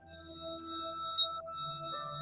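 Soft ambient meditation music of several steady, held tones.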